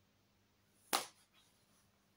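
A single sharp click about a second in, a hard plastic DVD case being handled, followed shortly by a much fainter tick.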